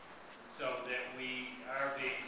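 Only indistinct speech: after a brief pause a voice starts talking about half a second in, drawing out one long syllable.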